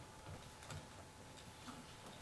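Faint, irregular taps of a walking cane and footsteps on a wooden stage floor, three soft knocks spread over two seconds.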